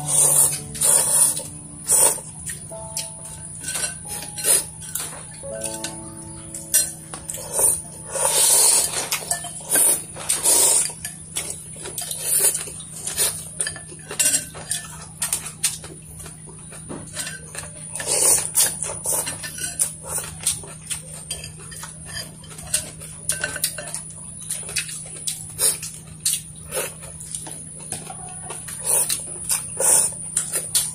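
Chopsticks and spoons clinking and knocking against ceramic bowls during a noodle-soup meal, in a quick irregular scatter of clicks, with some longer eating noises among them. A simple melody plays under the first several seconds.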